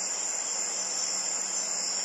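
A steady, high-pitched chorus of crickets at night.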